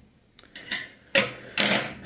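Handling noise from tools and materials on a tabletop: a few light clicks, then a louder burst of rustling scrape for most of a second near the end.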